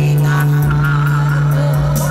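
Karaoke-style backing music over a PA during a live duet, in an instrumental passage with no singing: a low bass note held throughout under a wavering melody line.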